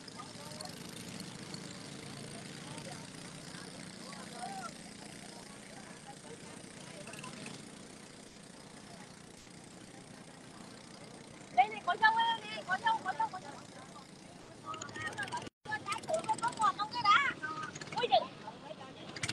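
Steady drone of a moving river boat's engine with water rushing along the hull. Voices talk briefly about two-thirds of the way in and again near the end, and the sound cuts out for an instant between them.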